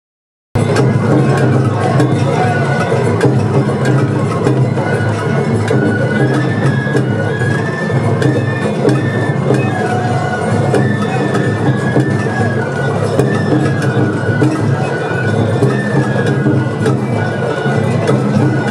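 Japanese festival float music (hayashi): a bamboo flute playing a stepping melody over taiko drums and sharp percussion strikes, running steadily, with crowd chatter underneath.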